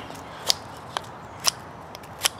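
A Helle Temagami knife's laminated steel blade shaving a wooden stick: three short, sharp cutting strokes about half a second apart as it bites deep into the wood.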